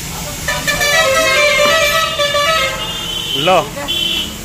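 A vehicle horn sounds steadily for about two seconds, starting about half a second in.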